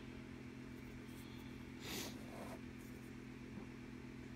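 A steady low hum from a motor or electrical appliance, with a brief rustling noise about two seconds in.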